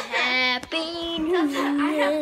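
A young girl singing long held notes without clear words, her pitch sliding between steady notes.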